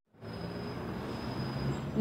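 Steady city street background noise, a low traffic hum with a faint thin high whine, cutting in after a fraction of a second of silence.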